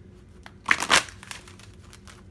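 A brief rustle of tarot cards being handled, starting just over half a second in and lasting under half a second.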